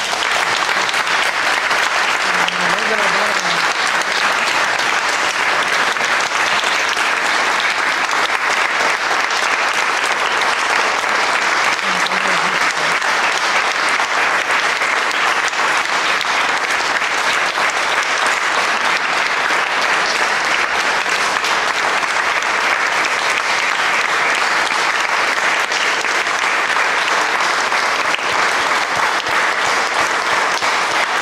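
Audience applauding steadily, the clapping holding at an even level without letting up.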